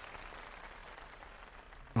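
Applause from a large audience, fading away.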